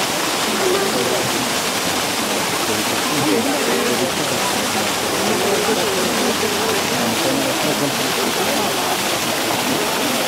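Steady rush of water running without a break, with voices murmuring faintly underneath.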